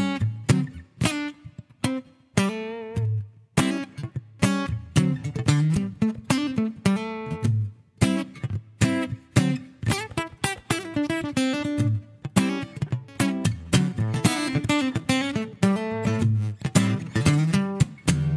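Acoustic guitar played in a rhythmic strummed groove, with short single-note melodic phrases worked in between the strummed chords as fills.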